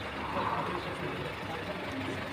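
A steady, low vehicle-engine and traffic hum, with no distinct event standing out.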